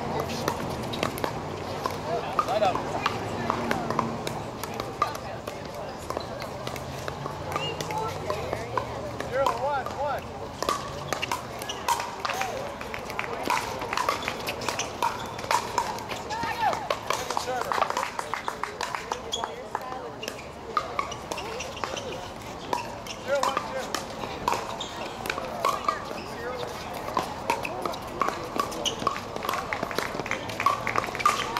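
Pickleball paddles hitting a hard plastic ball again and again, as sharp clicks, both on this court and on neighbouring courts, over the voices of players and spectators talking.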